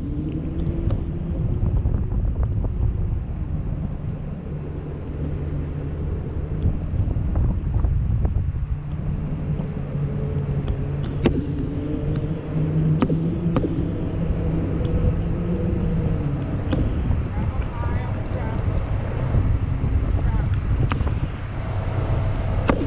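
Wind rushing over the microphone under a towed parasail, with a steady low engine drone from the tow boat whose pitch drifts a little. A few sharp clicks stand out.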